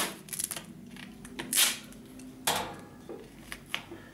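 Duct tape being handled: a strip pulled and torn from the roll, with two short rasping rips about 1.5 and 2.5 seconds in and small clicks and rustles between them.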